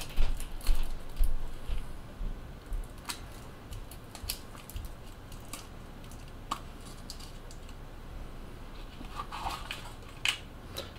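Small clicks and taps of handling packaging: metal vape coil heads pulled from a foam insert and set down, with plastic packaging tray handled. The clicks come thick in the first couple of seconds, thin out to a few single ticks, and pick up again near the end.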